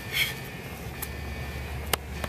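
A woman's short exhaled breath during a bodyweight exercise, a moment in, over a steady low outdoor rumble, with a light tap about halfway and a sharper tap near the end.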